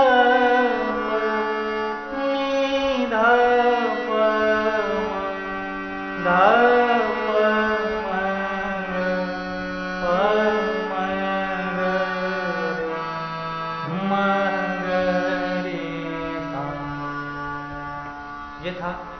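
Harmonium playing a four-note alankar scale exercise, stepping from note to note with held reed tones, while a man's voice sings the sargam syllables along with it.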